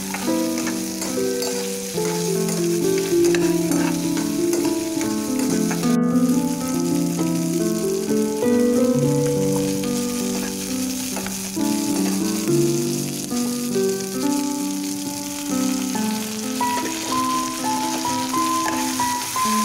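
Shallots and garlic sizzling as they fry in hot oil in a pan, stirred with a ladle. A melody of held notes plays over it as background music.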